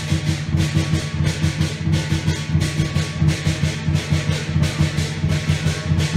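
Lion dance percussion: a large drum beating a fast, steady rhythm with cymbals clashing over it.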